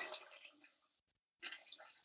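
Near silence, with faint water running from a kitchen tap into a pot of sliced potatoes; the sound drops out completely for a moment about a second in.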